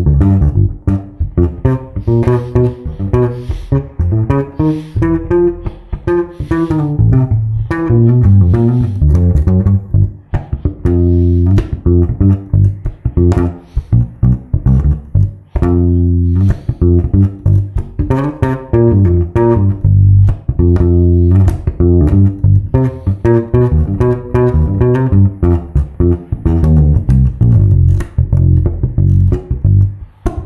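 Electric bass played fingerstyle through an amp: a G7 groove with fragments of a fast lick worked into it, the notes running on without a break.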